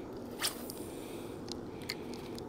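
A few short, sharp clicks over a steady low background noise, the loudest click about half a second in and two fainter ones near the end.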